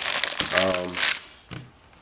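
Plastic packaging around a coil of heater hose crinkling as it is handled, for about the first second, then dying away.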